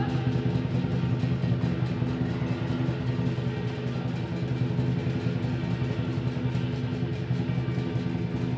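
Lion dance percussion band playing: the big lion drum beaten in a fast, even, unbroken stream of strokes, with cymbals clashing and a gong ringing steadily underneath.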